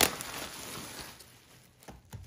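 Plastic bubble wrap rustling and crinkling as it is lifted and handled, opening with a sharp click and dying away over the second half.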